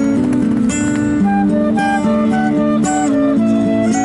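Acoustic guitar and transverse flute playing an instrumental passage of a song, the guitar keeping up a chord pattern under short melody notes.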